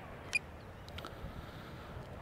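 Faint, steady background noise with a single short click about a third of a second in.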